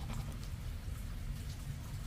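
A metal coin scraping the coating off a scratch-off lottery ticket in short, irregular strokes, over a steady low rumble.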